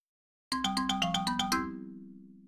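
Short musical jingle: after a brief silence, a quick run of about nine notes, then a held low chord that fades out.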